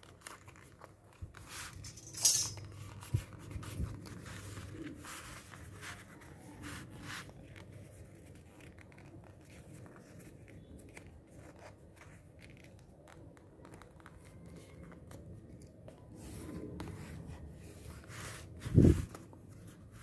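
A sheet of calendar paper being folded and creased by hand: soft rustling and sliding of the paper with scattered crackles, the sharpest about two seconds in. A dull thump comes shortly before the end.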